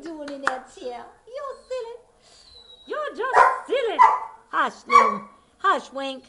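A dog barking, with softer whine-like calls in the first two seconds, then a run of about six loud, sharp barks in the second half.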